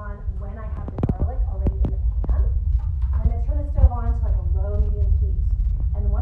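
A woman talking, with a few sharp knocks between about one and two seconds in from a knife on a cutting board as she handles garlic cloves.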